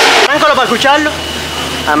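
A man's voice speaking briefly, then a low steady hum underneath.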